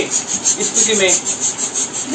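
Plastic hand balloon pump worked quickly: a fast, rhythmic hiss of air with each stroke.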